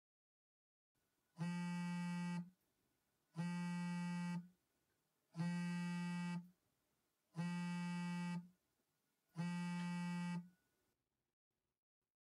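Telephone ringing tone of a call being placed: five identical buzzy one-second tones, one every two seconds, with silence between them.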